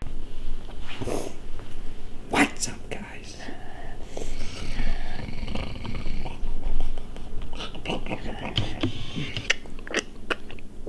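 Hushed, whispered talk, with a few short clicks.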